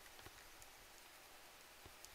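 Near silence: room tone, with two faint ticks.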